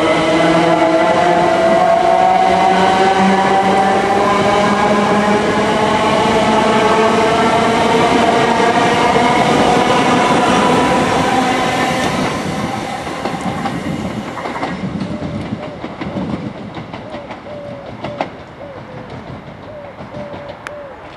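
Electric multiple unit pulling away along the platform, its traction motors giving a stack of whining tones that climb slowly in pitch as it gathers speed. The whine fades away about twelve to fifteen seconds in, leaving quieter rail noise with a few clicks.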